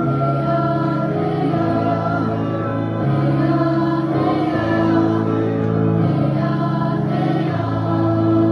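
Mixed-voice choir singing with piano accompaniment, sustained chords that shift every second or two.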